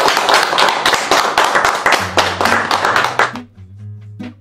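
A small group of people clapping their hands in applause. About halfway through, low steady music tones come in under the clapping, and the clapping stops shortly before the end, leaving the music.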